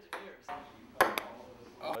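Table tennis ball clicking off paddles and the table in a rally: a few sharp pocks, the loudest about a second in, followed quickly by another.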